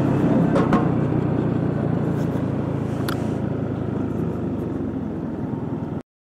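Yamaha NMAX 155 scooter's single-cylinder engine running at low speed, a steady low hum with a couple of faint clicks.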